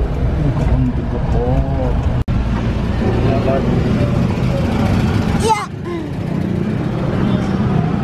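An old car's engine running with a steady low rumble as it moves slowly, with a sharp knock about five and a half seconds in, after which the rumble drops.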